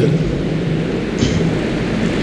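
A Quran recitation through a microphone breaks off at the very start, and a steady rumbling background noise fills the pause that follows.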